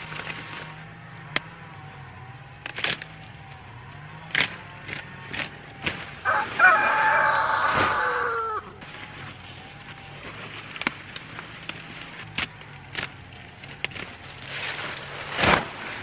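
A rooster crows once midway, a loud call of about two and a half seconds that falls in pitch at the end. Around it come scattered short snaps and crunches as thick comfrey stalks are cut through with a knife at ground level.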